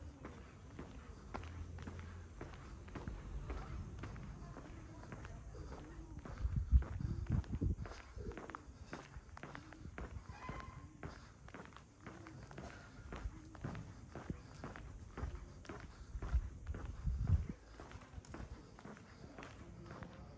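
Footsteps of a person walking on a paved street, about two steps a second. Two louder low rumbles come in, about a third of the way in and again near the end.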